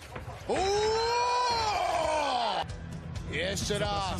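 A single voice holds one long note for about two seconds, rising and then falling in pitch, over background music. More voices follow near the end.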